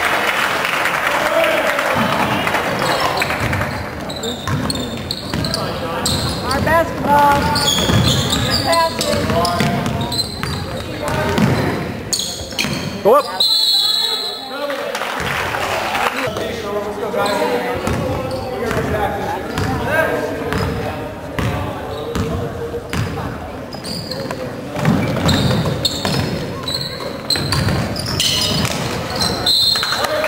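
Basketball game sounds in a gym: a ball bouncing on the hardwood floor with repeated knocks, under players' and spectators' voices and shouts.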